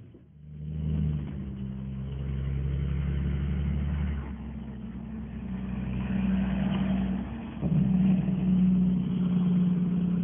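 A vehicle engine running steadily, its note shifting about four seconds in and again near eight seconds.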